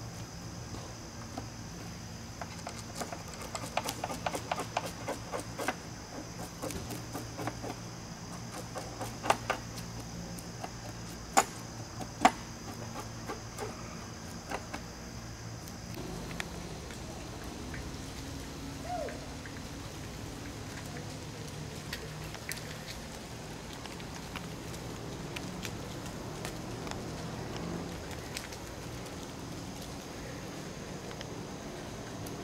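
Irregular clicks and knocks from hands and tools working at a picnic table, with a few sharper raps midway, over a steady high hum. About sixteen seconds in the knocking and hum stop, leaving a quieter, even outdoor ambience with a single short chirp.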